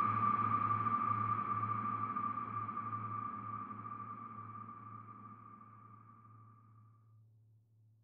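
The closing of a film-score cue: a steady high sonar-like tone over a low drone, fading out over about seven seconds to near silence.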